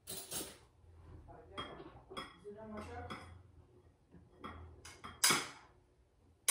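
Dishes and cutlery knocking and clinking in an irregular string of short strikes, some ringing briefly, with one louder clatter a little after five seconds in.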